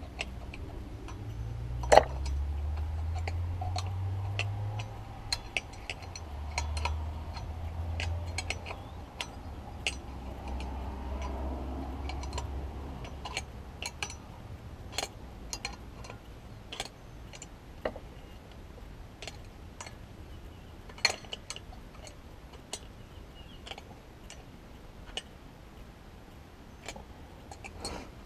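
Adjustable steel wrench clicking and clinking against the hex nuts and washers of wedge anchors as it is reset on the nut again and again, in irregular sharp ticks, while the nuts are turned down until the anchors lock in the concrete. A low rumble sits under the clicks for about the first half.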